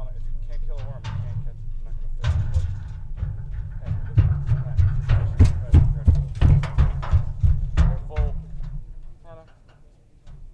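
Footsteps knocking on wooden dock boards, loudest in the middle at roughly two a second, over a low rumble, with brief indistinct voices.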